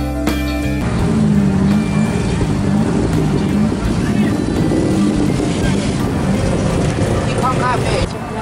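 Background music stops about a second in, giving way to the small engine of a tuk-tuk running in traffic. Its pitch rises and falls as it speeds up and slows, over road noise.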